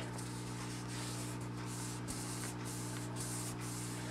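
Steady low electrical hum with a constant hiss over it: room tone, with no distinct sounds from the paper being pressed down.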